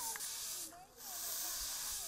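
Brooms sweeping a concrete road: a scratchy hiss in strokes about a second long, with a short break between them.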